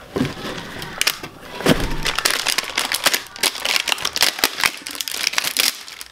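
Clear plastic packaging bag crinkling and crackling as the parts inside it are handled, a dense run of sharp crackles.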